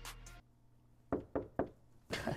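Three quick knocks on a door, a little over a second in, about a quarter-second apart.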